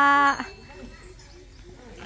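A loud, steady held vocal note that cuts off about half a second in, followed by faint outdoor background.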